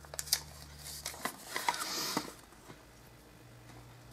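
A small folded paper note being handled and unfolded by hand: light taps and clicks, with a short rustle of paper about two seconds in.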